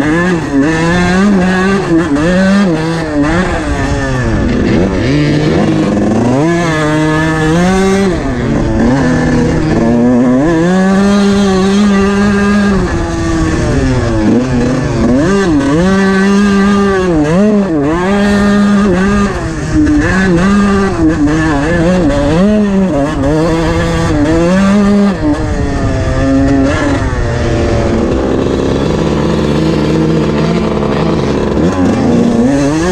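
Two-stroke dirt bike engine under hard throttle in soft sand, its note rising and falling again and again as the rider works the throttle and gears. Over the last few seconds it gives way to a steadier engine note.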